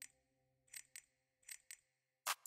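Near silence, broken by a few faint short clicks that come roughly in pairs.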